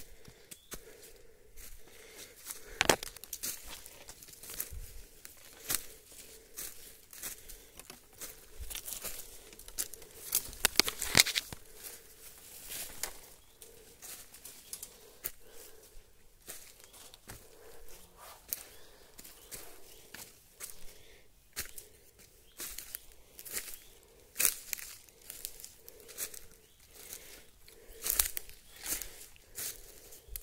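Footsteps crunching and rustling through dry bamboo leaf litter and undergrowth, with irregular crackling of dry leaves and twigs underfoot. There are louder crackles about three seconds in, around eleven seconds, and again toward the end.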